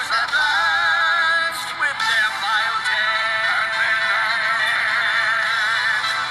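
A song with a synthetic-sounding singing voice holding long, wavering notes over musical accompaniment.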